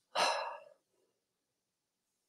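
A person's short breathy exhale, about half a second long, near the start.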